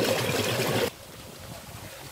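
Water running steadily through a man-made spillway as a ragworm pond is drained for harvest. It cuts off abruptly about a second in, leaving quieter outdoor background.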